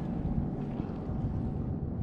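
Wind buffeting the microphone: a steady low rumble with no distinct events.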